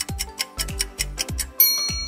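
Quiz countdown timer ticking rapidly over a background music track. About a second and a half in, a bright chime rings out and holds, marking the answer reveal.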